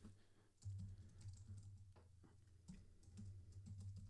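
Faint, irregular computer keyboard typing and clicks over a steady low hum.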